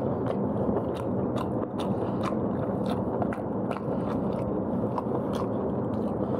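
Close-up chewing of pork leg meat, with wet mouth clicks and smacks at irregular intervals over a steady low background noise.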